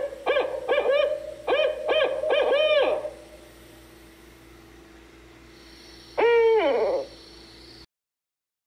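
Barred owl hooting: two quick runs of about four hoots in the first three seconds, then one long hoot that falls in pitch, the drawn-out closing note of its 'who cooks for you, who cooks for you-all' call.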